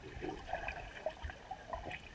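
Swimming-pool water heard from an underwater camera: a muffled, fairly quiet swirl of water with small scattered bubbly pops and gurgles.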